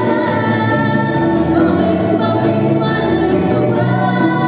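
A woman singing a melody into a microphone with a live band of guitars, keyboard and drum, played through the stage PA. The music runs at a steady loudness.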